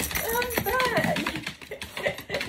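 A small curly-coated dog's claws clicking and scrabbling on a wooden floor as it wriggles and spins in excitement, mixed with a few short high-pitched excited cries in the first second.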